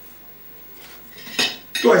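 Cutlery clinking on a plate at a meal, with one sharp clink about a second and a half in.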